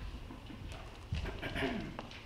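A choir getting to its feet and readying its music: shuffling, footsteps and knocks on the floor, and folders rustling, with a brief voice sound about halfway through.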